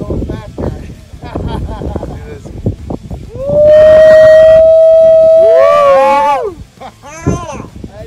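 A person's long, very loud whoop, held on one pitch for nearly three seconds before wavering and falling away. It follows some indistinct talk.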